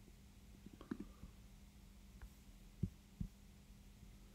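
Very quiet room tone with a faint steady hum and a few soft low thumps, the two loudest close together near the end.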